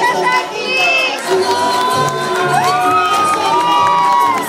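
A crowd of children shouting and cheering, with several long high-pitched calls that rise and are held for a second or more in the second half.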